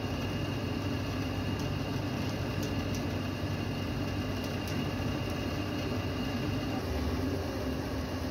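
Hydraulic compression press running with a steady low hum from its pump motor as the platen closes on powder-filled plate molds, with a faint high whine over the first few seconds.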